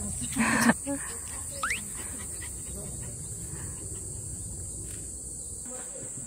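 Quiet outdoor ambience under a steady high-pitched insect buzz. A brief vocal sound comes about half a second in, and a short rising squeak about a second and a half in.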